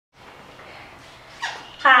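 Faint steady background noise, a brief sound about one and a half seconds in, then a woman saying "Hi" near the end.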